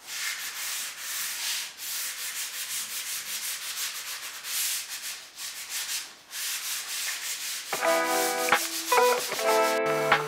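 320-grit sandpaper rubbed by hand back and forth along a solid pine table leg, in quick rasping strokes, several a second. Acoustic guitar music comes in near the end.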